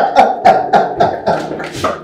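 Men laughing hard, in quick repeated bursts of about four a second that die away toward the end.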